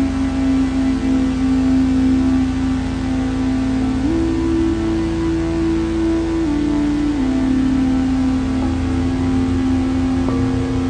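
Ambient drone music: a steady held low tone over a low rumbling bed, with a second, higher note joining about four seconds in and falling away around seven seconds.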